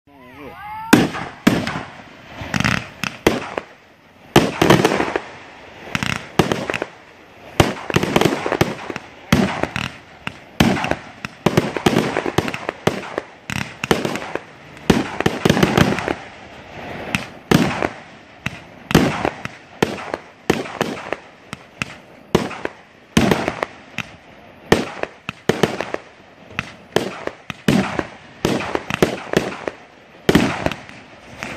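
Consumer firework cakes firing shot after shot: an irregular string of sharp bangs as shells launch and burst, at times several a second.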